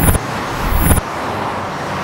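City street traffic: a steady wash of car noise, with two louder vehicle passes in the first second, the second cutting off abruptly about a second in.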